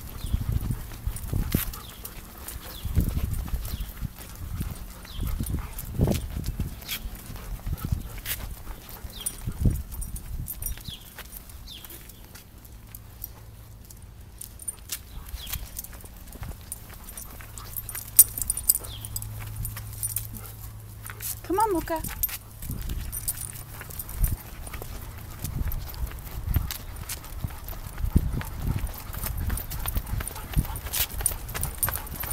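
Footsteps of a person and dogs walking on a concrete sidewalk: irregular steps, scuffs and knocks.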